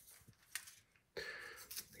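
Faint handling of metal Magic Keyboard parts: a light click about half a second in, then a short scrape with a few small clicks near the end.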